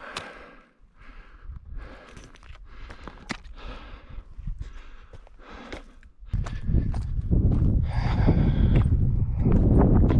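A hiker's heavy breathing and footsteps on stony ground while climbing, the breaths coming about once a second. About six seconds in, wind starts buffeting the microphone with a loud low rumble.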